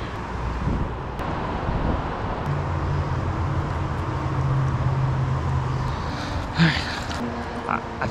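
Steady rush of river water running past a gravel bar, with the low drone of passing traffic rising under it for a few seconds in the middle.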